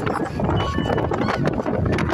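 Bus on the move, heard at an open side window: steady engine, road and wind noise with rapid irregular rattling and clicking, and a few brief high squeaks.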